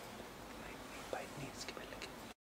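Quiet pause in a voiceover: low microphone hiss with a few faint, soft breathy sounds in the second half.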